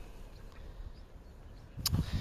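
Faint, low wind rumble on a phone's microphone outdoors, with a single short click near the end.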